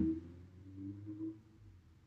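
Faint low hum that fades out a little past halfway through, leaving near silence.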